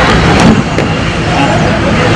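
Loud, steady outdoor din with people's voices mixed in, and a short sharp knock about half a second in.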